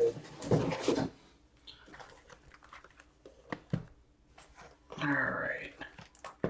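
Light clicks and rustles of a cardboard box of hockey card packs being opened and the foil packs lifted out, with a short rustle in the first second. A brief wordless vocal sound comes a little after five seconds.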